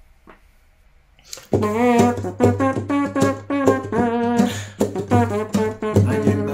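Nylon-string flamenco guitar strummed in a rumba rhythm, starting about a second and a half in after near silence. Over the guitar, a voice imitates a brass horn, playing a melody of short notes with the mouth.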